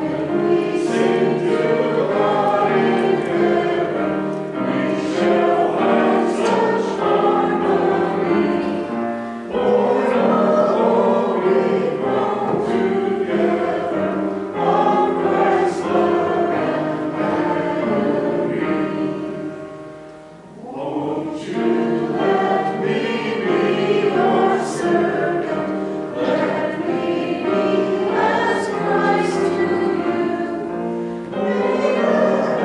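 A group of voices singing a hymn together, phrase after phrase, with short breaks between phrases about ten and twenty seconds in.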